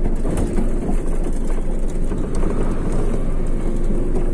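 Steady low rumble of a heavy truck's diesel engine running close by.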